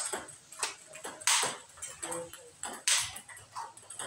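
Table tennis multiball drill: celluloid-type balls cracking off the player's forehand about every one and a half seconds, with lighter clicks of the feeder's bat and ball bounces on the table between.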